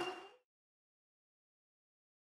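Silence: the last of the arena sound fades out in the first moment, then the track is empty.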